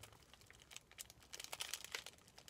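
Plastic candy bag crinkling as it is handled, in light, irregular crackles that grow busier in the second half.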